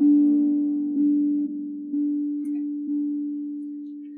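A plucked string instrument sounding a low, drone-like note over and over, struck about once or twice a second, each pluck ringing on and fading before the next.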